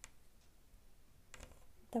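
Faint handling sounds of a thin steel crochet hook working crochet thread: a small click at the start and a soft rustle about a second and a half in.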